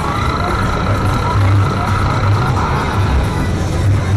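Arcade din: electronic game-machine music and tones over a low pulsing beat, with background chatter. A steady high electronic tone runs for the first two and a half seconds, then stops.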